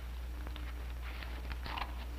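Scissors snipping slits into a large paper bag, a few short snips, over a steady low electrical hum.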